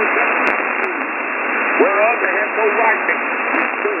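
WJHR's 15555 kHz shortwave broadcast received in upper-sideband mode on a software-defined radio: a preacher's voice comes through weak and broken under heavy steady hiss. The sound sits in a narrow, thin, telephone-like passband.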